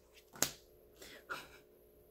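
A single sharp snap of a tarot card being pulled from the deck about half a second in, followed by a few faint rustles of card handling.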